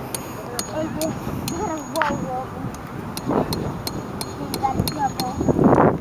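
People's voices in the background, not close to the microphone, with a string of light high ticks. A rush of noise comes in near the end.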